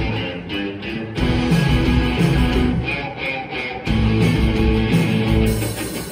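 A live rock band playing an instrumental passage, with electric guitar to the fore over bass. The playing briefly drops back twice, about a second in and around three seconds in.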